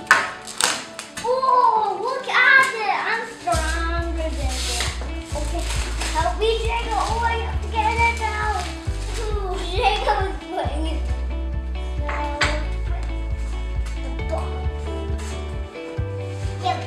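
Young children's excited voices, with no clear words. About three and a half seconds in, background music with a steady bass line comes in and runs under them.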